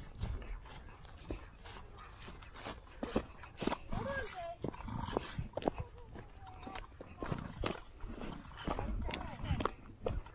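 Footsteps through grass and knocks from a hand-held camera, many short irregular clicks over a low rumble, with a few brief voice sounds in the middle.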